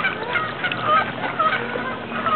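A flock of geese honking, many short calls following one another several times a second.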